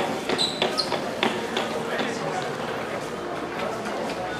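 Footsteps and scattered clicks and knocks on a hard floor, most frequent in the first two seconds, over a murmur of distant voices.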